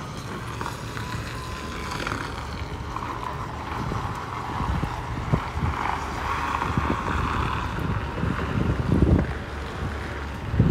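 Diesel engine of a livestock transport truck running as the truck backs in, a steady low rumble, with wind buffeting the microphone in gusts, strongest near the end.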